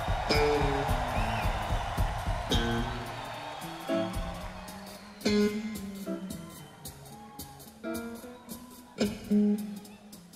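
Electric bass guitar playing a short solo break of separate plucked notes in a live rock performance. A dense wash of sound in the first few seconds fades out, leaving the notes spaced apart.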